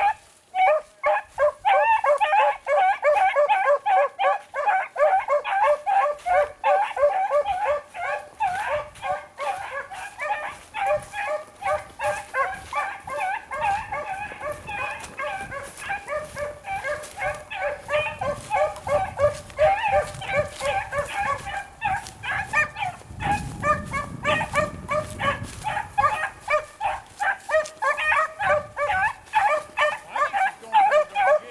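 Beagles baying on a rabbit's scent line, a rapid unbroken string of bays and yelps, several a second. The calls ease a little midway and pick up again toward the end.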